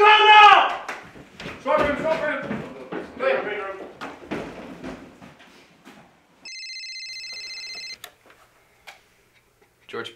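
Raised voices in the first few seconds. Then, about six and a half seconds in, a single electronic desk-telephone ring: a fast-warbling tone lasting about a second and a half.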